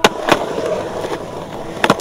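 Skateboard wheels rolling on smooth concrete, with sharp clacks of the board right at the start, again a moment later, and a double clack near the end.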